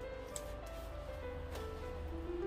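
Background music: a simple melody of held notes moving step by step, with a couple of faint clicks.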